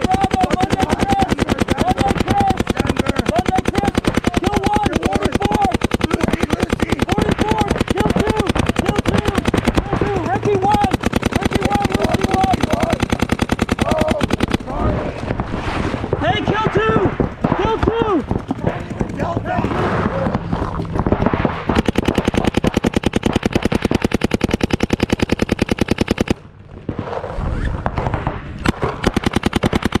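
Paintball markers firing in long, rapid streams of many shots a second, with a brief lull about three-quarters through before the firing picks up again.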